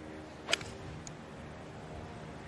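A golf club striking the ball: one sharp, crisp click about half a second in, over a faint steady outdoor background.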